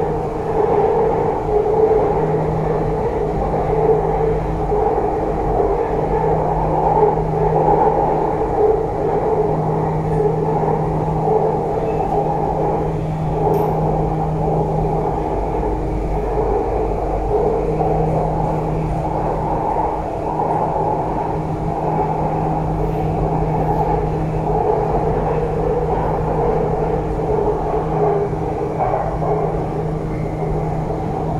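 Bangkok MRT metro train running between stations, heard from inside the carriage: a steady rumble with a constant hum.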